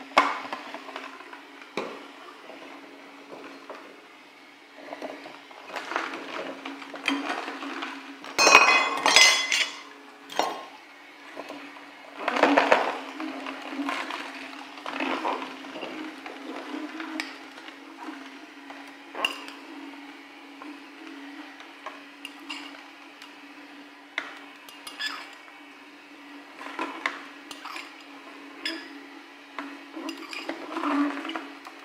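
Slow juicer's motor running with a steady low hum as produce is pressed down its feed chute. Clinks and clatters of bowls and a spoon come over it, the loudest a burst of clattering about eight seconds in.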